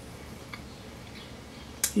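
Quiet mouth sounds of someone eating a chocolate cupcake: a couple of faint clicks, then a sharp lip smack near the end, just before a word begins.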